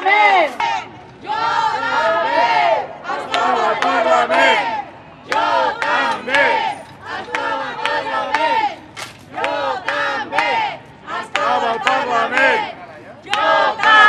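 A small crowd of protesters shouting slogans together in repeated loud bursts of a second or two, with short pauses between them.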